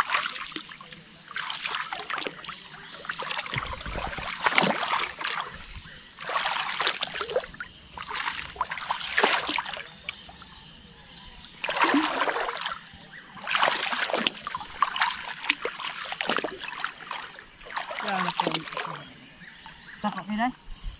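Legs wading through shallow water and dense flooded grass, each stride a sloshing swish, repeated every second or two.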